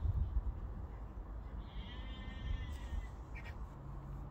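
A single drawn-out animal call lasting about a second and a half, midway through, over a steady low rumble.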